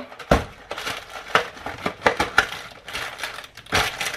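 Cardboard food box and its packaging being handled and stuffed back together: crinkling and crackling with scattered small clicks, and two sharper knocks, one near the start and one near the end.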